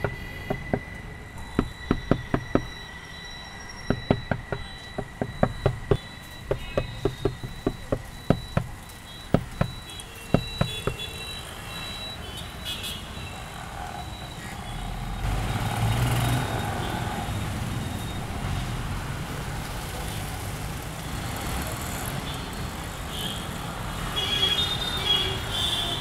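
Quick clusters of light knocks on a car's side window glass, heard from inside the car over a low traffic rumble. The knocking stops about eleven seconds in, and a few seconds later the traffic noise swells and holds steady.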